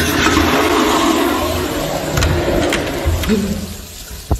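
Commercial flush-valve toilet flushing with a loud rush of water. A can is stuck in the bowl, so the water splashes back out. The rush fades away after about three seconds.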